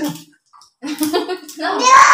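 Voices of adults and a small child talking, with a short pause about half a second in, then a loud, high voice near the end.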